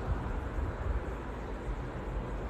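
Steady low rumble with a faint even hiss: background room noise between spoken lines.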